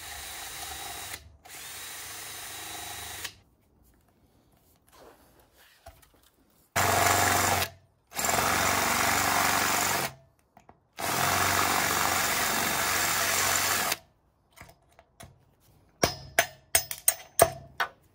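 Cordless drill boring into the aluminium mast of a Hobie 16 catamaran, running in several bursts of a few seconds each, the later ones louder. Near the end, a hammer taps a pin punch in a quick run of about eight strikes.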